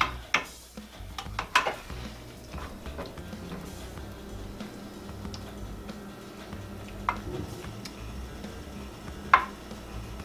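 A spatula stirring and scraping cubed butternut squash in a metal baking pan, with a few knocks against the pan in the first two seconds and two sharp clicks later on.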